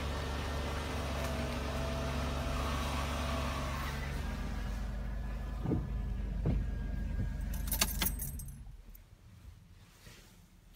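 The 2007 Dodge Grand Caravan SE's engine idling, heard from inside the cabin, with a few clicks. About eight seconds in, a ring of keys jangles as the ignition is switched off, and the engine's hum stops.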